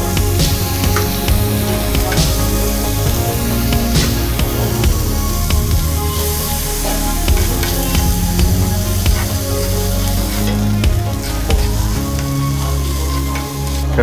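Chopped vegetables and egg sizzling on a flat iron griddle, with frequent short taps and scrapes of a spatula on the steel, under steady background music.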